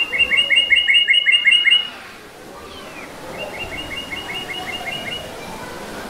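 A bird singing two rapid trills of about ten repeated, down-slurred chirps each, roughly five notes a second: a loud one in the first two seconds, then a quieter repeat a little over a second later.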